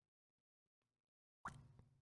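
Near silence: the sound drops out almost completely, with one faint short sound about one and a half seconds in.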